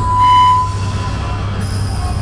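Amplified live band's sound: a steady low drone, with a single clear high tone that sounds loudest at the very start and fades within about half a second.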